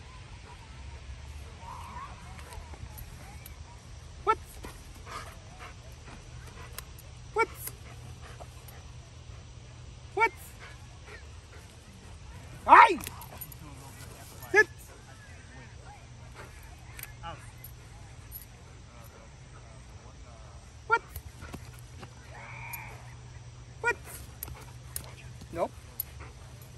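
A dog barking: about eight short, single barks spaced a few seconds apart, the loudest about 13 seconds in, over a steady low rumble.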